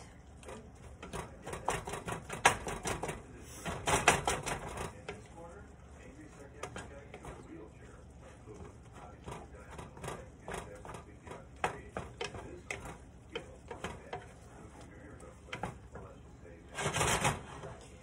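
A wooden spoon stirring and breaking up browning ground beef in a nonstick skillet, clicking and scraping against the pan in quick irregular taps. There is a louder scrape about a second before the end.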